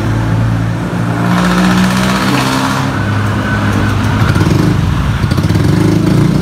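Honda Beat FI scooter's small single-cylinder fuel-injected engine running at idle just after being started, its idle speed shifting up and down slightly. The idle has not yet settled after the ECU and throttle-position reset, which the mechanic takes as a sign that the reset must be repeated.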